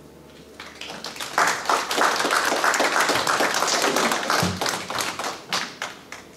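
A small audience clapping at the end of a song: applause starts about a second in, holds for several seconds and dies away near the end.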